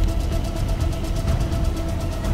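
Tense film background music, a held note over a fast, even ticking pulse, with a low car rumble beneath it.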